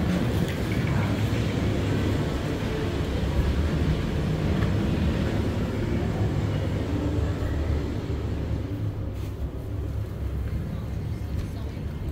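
Low, steady rumble of city street traffic, with people talking in the background.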